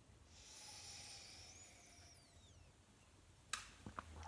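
A faint sip from a glass flute of sparkling grape drink: a soft airy hiss lasting about two seconds, then a short click about three and a half seconds in.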